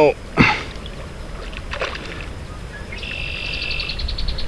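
A hooked redfin mullet thrashing and splashing at the surface of a stream while being played on a fly rod, with a short sharp splash about half a second in.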